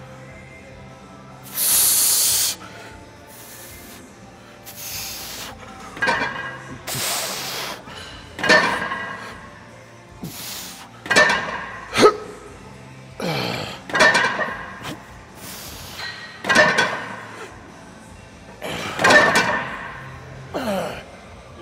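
A man's forceful breathing and strained grunts as he presses a plate-loaded chest press machine through a rest-pause set near failure: one long hard exhale about two seconds in, then a grunt with each rep every second or two. Near the middle comes a single metal clink, likely the weight plates.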